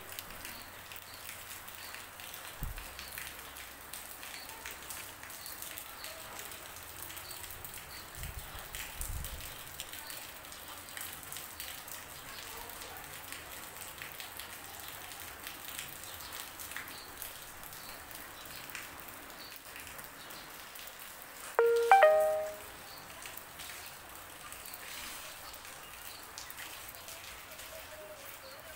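Steady rain falling on wet pavement, a soft even patter. About three-quarters of the way through, a brief, loud pitched sound that steps up in pitch cuts across it.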